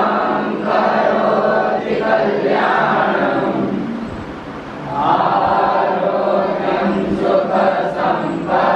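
A group of young voices chanting in unison in long phrases, with a short break near the middle.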